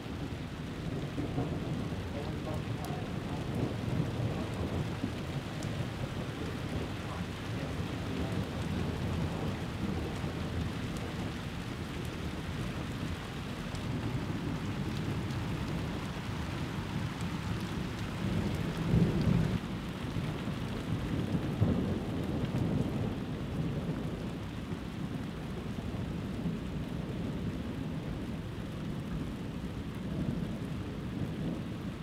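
Thunder rumbling almost without a break, with louder peaks about two-thirds of the way through, over steady rain.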